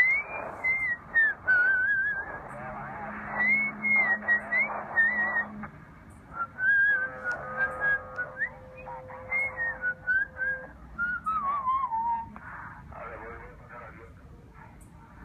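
CB radio traffic coming through a Tecsun PL-660 receiver's speaker: someone whistles a wavering, gliding tune over the channel, with garbled voice underneath. The audio is thin and narrow, as radio audio is, and steady tones come and go for a few seconds at a time, a low one first and a higher one later.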